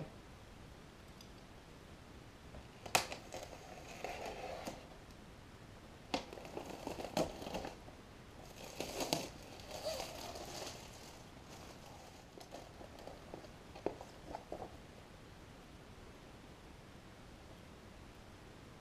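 Scissors snipping and clear plastic wrapping crinkling as a plastic bag is cut and pulled open, in short scattered bursts with quiet gaps between.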